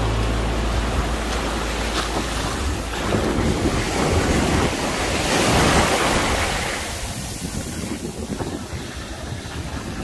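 Ocean surf washing up the beach in shallow water, with wind noise on the microphone; a wave swells to its loudest about five seconds in and then draws back, quieter.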